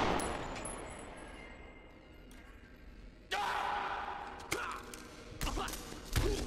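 Echo of a revolver shot ringing and dying away in a concrete parking garage. About three seconds in comes a drawn-out cry, then a few sharp thumps near the end.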